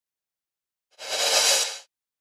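Crash cymbal transition effect (a frozen crash tail) played back through automated auto pan and reverb: a bright cymbal wash starts about a second in, comes up quickly and cuts off sharply under a second later.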